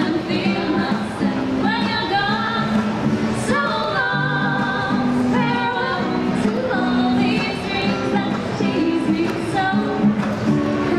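Two women singing a song together, one accompanying herself on a strummed acoustic guitar.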